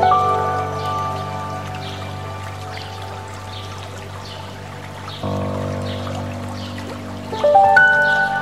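Soft, slow piano music: chords struck at the start, again about five seconds in and once more near the end, each left to ring and fade. Underneath runs the steady rush of a stream.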